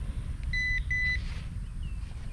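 Two short, identical electronic beeps from a handheld Nokta AccuPoint pinpointer, about half a second and about a second in.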